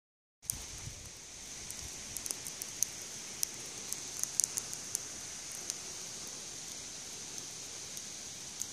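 Quiet outdoor ambience: a steady, high-pitched insect drone, with scattered light clicks and crackles in the first five seconds.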